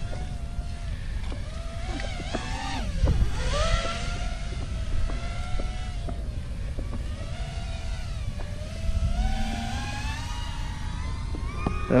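FPV racing quadcopter's brushless motors whining, their pitch repeatedly rising and falling with the throttle, over a steady low rumble, heard from the quad's onboard camera.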